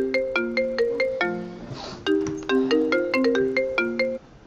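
A mobile phone ringtone playing a quick melodic tune of short, bell-like notes in two phrases with a brief break between them, cutting off suddenly at the end.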